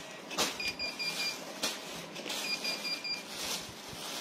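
Plastic packaging crinkling and rustling as wrapped clothes are handled, with a few sharp clicks. Two quick runs of high electronic beeps, about five short pips each, sound about half a second in and again about two and a half seconds in.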